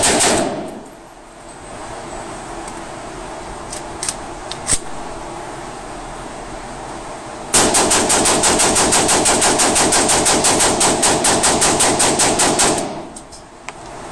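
Rifle firing fully automatic in an indoor range: a rapid burst cuts off just after the start. After a pause of about seven seconds with a couple of clicks, a long steady burst of about five seconds follows, as the gun is test-fired for function.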